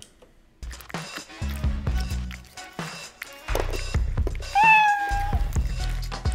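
Background music with a low beat, turned down in gain, under a cat-eating sound effect of scattered clicks and crunches, starting about half a second in. A domestic cat meows once about four and a half seconds in, rising briefly and then holding its pitch for under a second.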